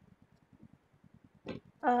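Near silence with a faint, low, rapid pulsing buzz, about a dozen pulses a second. Near the end a voice comes in over the call with a hesitant "uh".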